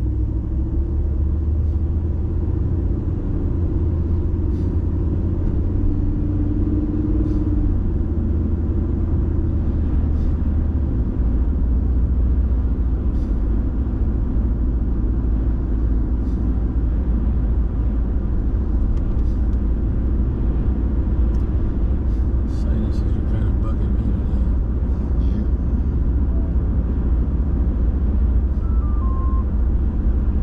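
Inside-the-cab sound of a vehicle pulling away and driving along a road: a deep, steady rumble of engine and tyres, with the engine's hum strongest in the first several seconds as it gets under way.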